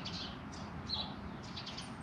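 Faint bird chirps: a few short high notes near the start and about a second in, over a steady low background hum.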